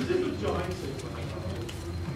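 Faint, indistinct voices with a low, hum-like murmur, over a steady low hum of room noise.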